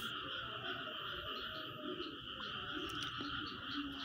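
A faint, steady background chorus of calling animals, high-pitched and unbroken.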